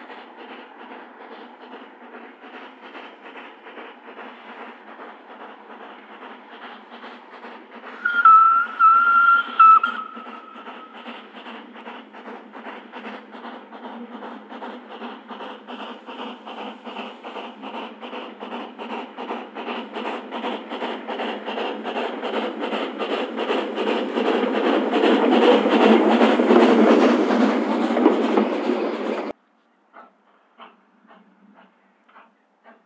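Steam Motor Coach No 1, the 'Coffee Pot', running under steam with a steady rhythm of exhaust chuffs. Its whistle sounds in three short blasts about eight seconds in. The chuffing grows steadily louder through the second half, then cuts off suddenly just before the end.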